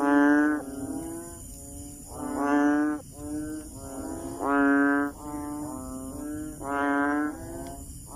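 Banded bullfrog (Kaloula pulchra) calling: four loud, low calls about two seconds apart, each under a second long, with quieter calls from other frogs in between.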